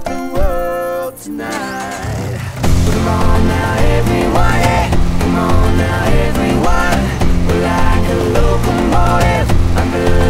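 Instrumental stretch of an upbeat acoustic pop song with no singing. A short melodic line plays, then about two and a half seconds in the full groove comes in, with heavy bass and a steady beat that includes percussion struck on the body of a Volkswagen Beetle.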